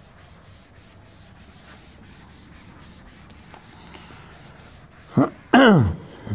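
Blackboard duster rubbing chalk off a chalkboard in quick back-and-forth strokes, about four a second. Near the end, two loud short sounds from a person's throat, falling steeply in pitch.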